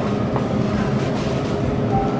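A steady rumble with a faint continuous hum: supermarket background noise with no distinct events.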